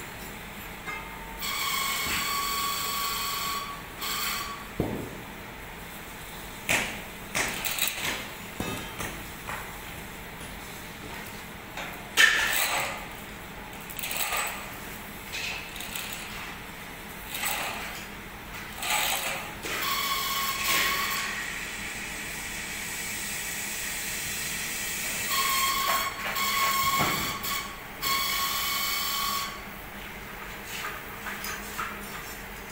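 Electric chain hoist whining as it runs in short spells, lifting and moving a suspended foundry ladle, with metal clanks and knocks from the ladle and chains between the runs.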